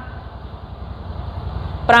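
A steady low background rumble with a faint hiss in a pause between spoken phrases. A man's voice starts again near the end.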